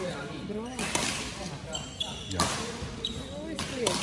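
Badminton rackets striking the shuttlecock in a doubles rally: a series of sharp hits, about one a second, with brief squeaks of court shoes on the floor near the middle.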